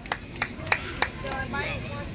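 A spectator close to the microphone claps four times, sharp and about three claps a second, then stops, leaving faint voices in the background.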